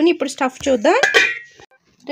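A woman speaking in narration, breaking off about one and a half seconds in, followed by a brief gap of near silence.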